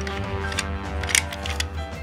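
Several small, sharp plastic-and-metal clicks as a die-cast Hot Wheels car's flip-up cockpit is pressed shut and latches, over steady background music.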